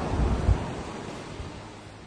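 Low rumbling wind noise on the microphone, with a stronger gust about half a second in that then dies away.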